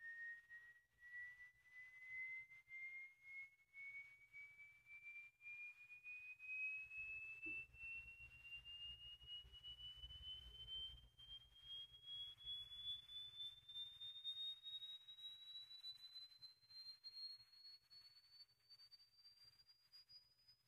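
Sine-wave frequency sweep played into an RCA STS-1230 speaker cabinet through an exciter for a cabinet-resonance test: a faint pure tone gliding slowly and steadily upward in pitch.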